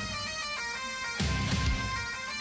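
Bagpipe music with a steady drone.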